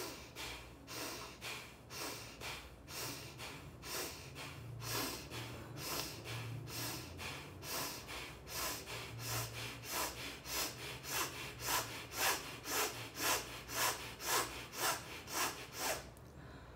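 A woman breathing sharply in and out through her nose with her lips closed, a fast even run of about two sniffing breaths a second that grows louder in the second half. This is the Alba Emoting breathing pattern for anger, with the jaw clenched and the body tensed.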